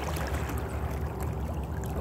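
Water trickling and lapping around a plastic sea kayak's hull as it moves through shallow water, over a low steady rumble.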